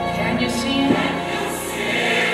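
Gospel music with a choir singing sustained notes, accompanying a praise dance.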